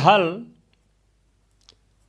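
A man's voice finishing a spoken word, then quiet room tone with one faint click of a marker pen on paper near the end.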